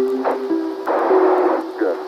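Apollo 11 lunar-landing radio voice, narrow and crackly, calling 'Good' near the end, over sustained electronic tones that step between notes. A short hiss of radio noise comes about a second in.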